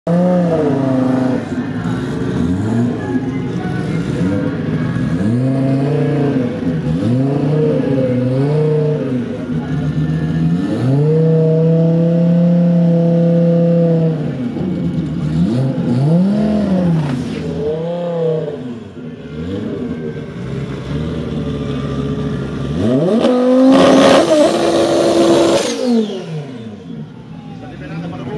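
Fiat Marea's turbocharged five-cylinder engine revved over and over, the pitch climbing and dropping with each blip, with one rev held for a few seconds around the middle. Near the end comes a longer, louder rev with a strong hiss over it.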